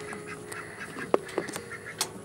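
Domestic fowl calling faintly in the background, with one sharp click about a second in.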